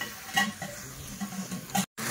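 Food frying with a faint, steady sizzle, a short clatter about half a second in, and murmured voices in the background.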